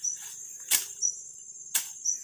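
Weeds being cut by hand: two sharp swishing strokes about a second apart. Under them runs a steady high trill of crickets, with short chirps repeating about once a second.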